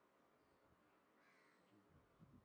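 Near silence: faint room tone, with a faint animal call, likely a bird, about a second in.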